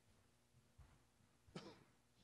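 Near silence with a low room hum, broken by one short cough about a second and a half in.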